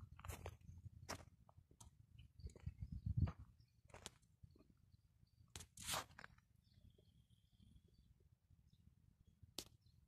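Irregular, quiet footsteps crunching on gravelly ground, with louder steps about three and six seconds in.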